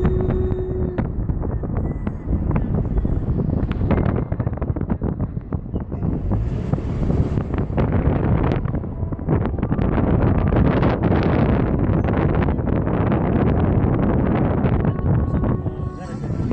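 Wind buffeting the microphone from a moving vehicle, gusting unevenly over a steady low road rumble.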